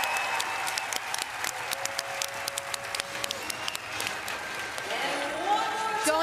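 Arena crowd applauding: a steady wash of many hands clapping.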